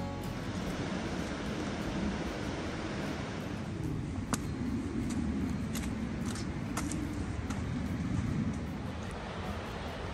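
A steady outdoor rushing noise while walking a rocky trail, with a few footsteps striking the ground now and then in the second half.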